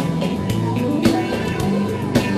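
Rock band playing: guitar over a drum kit, with a steady drum beat.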